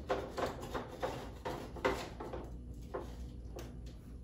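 A spatula scraping and tapping against a metal baking sheet as baked cookies are lifted off it: a string of short scrapes and clicks, several a second at first and sparser later.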